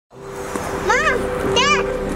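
A toddler gives two short, high-pitched calls, about a second in and again half a second later, over sustained notes of background music.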